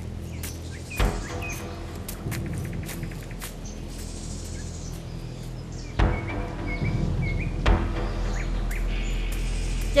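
Background music with steady low held notes, and birds chirping in the forest. A few short knocks sound about a second in and twice more later.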